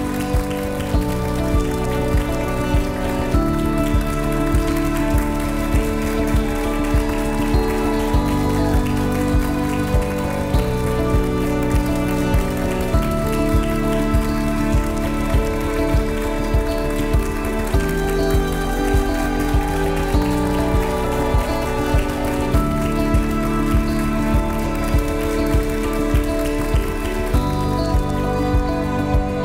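Music with a steady beat and held notes, over a dense crackle of audience applause.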